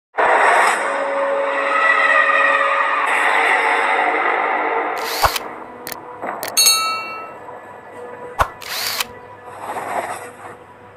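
Edited intro sound effects: a loud rushing whoosh for about five seconds, then a few sharp clicks, one followed by a bright ringing chime, and a short whoosh near the end, laid over the animated subscribe-button card.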